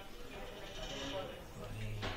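Faint, indistinct voices in the background, one of them drawn out and wavering around the middle. A low hum comes in briefly near the end.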